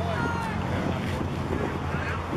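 Distant voices of players and spectators calling out across a baseball field, with wind on the microphone and a low steady hum underneath.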